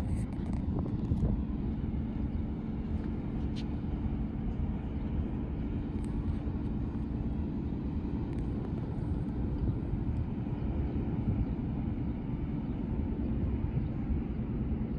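Steady low rumble with a faint, even engine drone: the diesel engines of the self-unloading lake freighter Frontenac, heard across the water.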